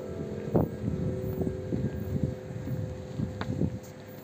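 Wind buffeting the camera microphone in irregular low gusts, with a faint steady hum underneath.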